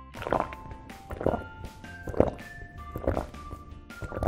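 Four short gulping sounds, about one a second, for a toy pup pretending to drink from a baby bottle, over light background music.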